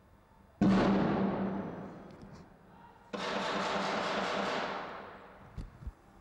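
A single loud bang with a long echoing decay, then about two and a half seconds later a burst of rapid gunfire lasting about a second and a half, echoing off the surrounding buildings. A short low thump comes near the end.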